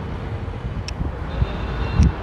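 Road traffic passing, a steady low rumble with a short click about a second in and a thump at the end.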